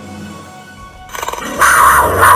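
Background music, then a big cat's roar sound effect that comes in about a second in and swells to its loudest near the end, drowning out the music.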